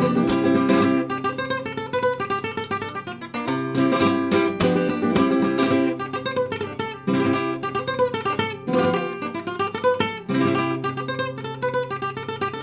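Nylon-string flamenco guitar with a capo playing a sevillanas at normal speed. Passages of strummed chords come back every few seconds, with runs of single plucked notes between them.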